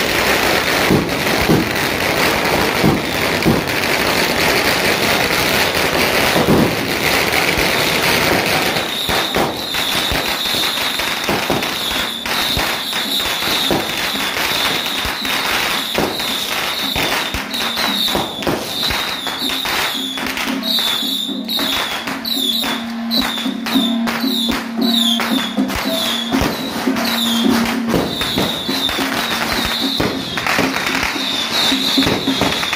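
Strings of firecrackers crackling continuously with rapid sharp bangs, heaviest in the first several seconds, over music. A high wavering tone joins about nine seconds in.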